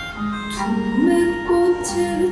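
A Korean folk-trained female singer singing a slow melody into a microphone in long held notes, the voice stepping up in pitch about a second in, over soft instrumental accompaniment.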